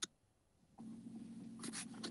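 Faint background noise from an open video-call microphone: a short click, then, from just under a second in, a low steady hum with light rustling or scratching.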